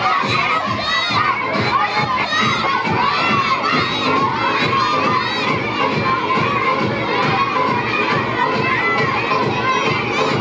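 A crowd of children shouting and cheering continuously, many high voices overlapping.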